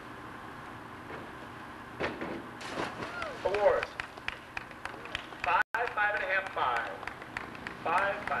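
Indistinct voices talking over a steady background hiss, the talk beginning about two seconds in, with a brief complete dropout in the sound just before the six-second mark.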